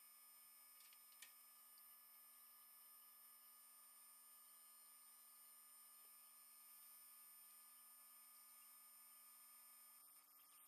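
Near silence: faint room tone with a steady low electrical hum and one small click about a second in.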